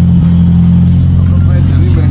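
A car engine idling: a loud, steady low drone.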